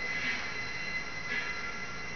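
Steady mechanical running noise with a thin, constant high whine, swelling faintly about once a second.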